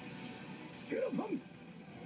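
Faint voice and background music from the anime episode's soundtrack, playing quietly under the reaction.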